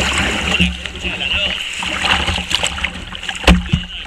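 Kayak paddling on a river, heard from the boat's deck: paddle strokes splashing and water rushing along the hull, with wind rumbling on the microphone. A sharp, loud knock or splash about three and a half seconds in.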